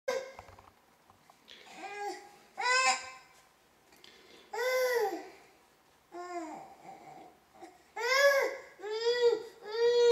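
Infant babbling and fussing: a string of short, high-pitched calls that rise and fall in pitch, spaced out at first and coming in quick succession for the last couple of seconds.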